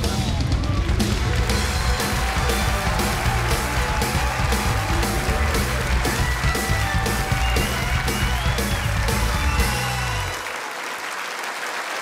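TV show opening theme, a rock-style tune with a steady drum beat of about two strokes a second and heavy bass. The music ends about ten seconds in, leaving studio audience applause.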